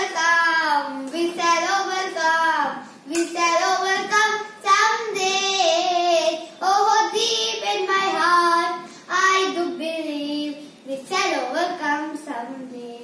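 A child singing a song unaccompanied, in sung phrases of a second or two with short breaks between them.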